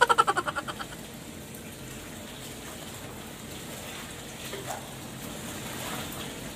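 Clothes being washed by hand in a tiled laundry room: a steady wash of running water and wet fabric. It opens with a short burst of rapid rattling pulses that dies away within the first second.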